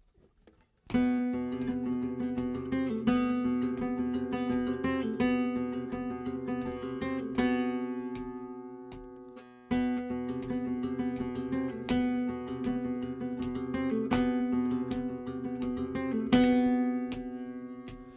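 Nylon-string flamenco guitar playing a rhythmic flamenco phrase in compás, fingerpicked and strummed. The notes die away about seven and a half seconds in, and the playing starts again with a sharp attack about two seconds later.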